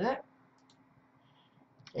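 A few faint, short computer mouse clicks in near silence, between spoken sentences.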